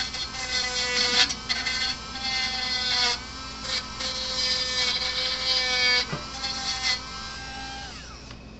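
Handheld rotary tool running at high speed, its bit grinding the arc-burnt high-voltage output terminals of a fence charger's circuit board to clean them and widen the gap. The steady whine is broken briefly a few times as the bit bears on the metal, then stops near the end.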